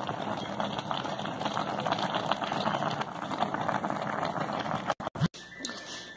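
Chicken stew with chopped onion simmering in a pan on the stove: a steady bubbling and crackling that stops abruptly about five seconds in.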